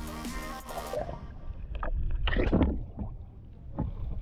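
Background music for about the first second, then it cuts off to water splashing and churning as tarpon strike at the surface, loudest in the middle, over a low wind rumble on the microphone.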